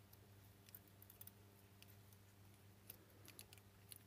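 Near silence: a faint steady hum with a few faint ticks from hands handling the plastic light base and its wired circuit board.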